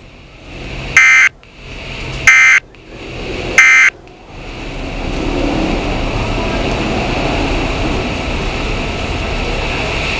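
Weather radio speaker giving three short, identical screeching bursts of SAME digital data tones about a second and a bit apart, the end-of-message code that closes the weekly alert test broadcast. A steady rushing static noise follows.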